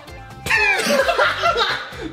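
Laughter breaking out about half a second in, over background music.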